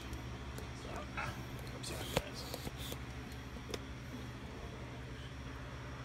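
Steady low room hum with a few light clicks and knocks from handling around the cart's engine bay. The sharpest click comes about two seconds in.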